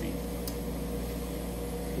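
Steady machine hum from a running cryostat's refrigeration and fan, with a faint low drone and a thin steady tone, and one faint click about half a second in.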